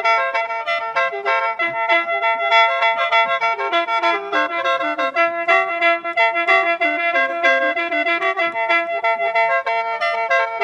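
Khaen, the bamboo free-reed mouth organ of Isan and Laos, playing a lam long melody in A minor. Quick running notes move over a steady held drone.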